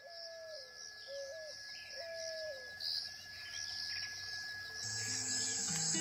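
Nature ambience of chirping insects and repeated bird calls, each call rising and falling, as the opening of a background music track; soft low musical notes come in near the end.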